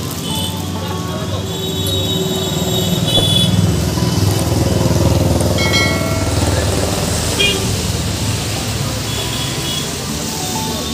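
A busy mix of background voices, music and vehicle noise, with a low rumble that swells in the middle and scattered short high-pitched tones.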